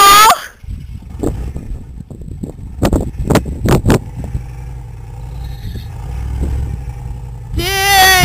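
Engine of a Chevy Blazer-based 4x4 pickup running at a distance with a low rumble that builds a little in the seconds before the end, with a few sharp knocks about three to four seconds in.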